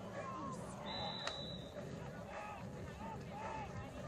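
Spectators chattering in the stands of a football game, with a short, high, steady referee's whistle blast about a second in.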